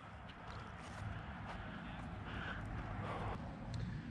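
Faint footsteps and rustling of a person walking on a grassy dirt bank.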